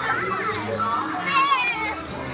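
A group of children chattering and calling out over one another, with one child's high, wavering shout in the second half.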